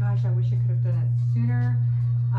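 A loud, steady low-pitched hum, a single unchanging tone, with a woman's talking voice fainter above it.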